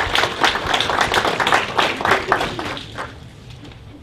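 A small audience applauding, which dies away about three seconds in.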